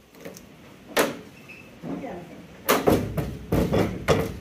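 Knocks and clatter of a knife and a wooden board being put down on a steel work table: one sharp knock about a second in, then a cluster of louder knocks near the end.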